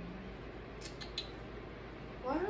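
Quiet steady room hiss, with three or four faint, short high clicks about a second in.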